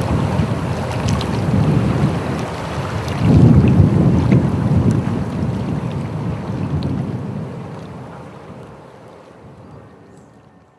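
A low rushing noise, like wind or surf, with no music or voices. It swells about three seconds in and then fades out slowly.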